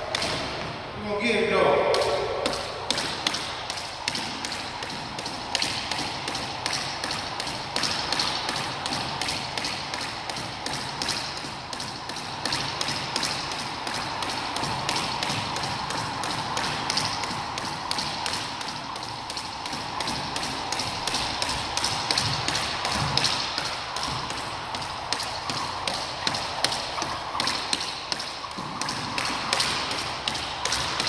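Jump rope slapping a hardwood floor on each turn, a fast, even rhythm of taps that keeps going steadily.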